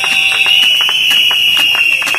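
Protest crowd blowing whistles in one continuous shrill, slightly wavering tone, with scattered hand claps throughout.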